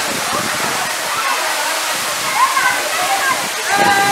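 Waterfall pouring onto rock and into its plunge pool, a steady heavy rush of falling water. Voices of the bathers calling out and chattering over it, busiest in the second half.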